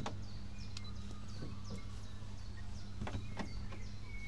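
Steady low hum of a slow ride boat on the water, with a sharp knock at the start, two more knocks about three seconds in, and faint short high chirps.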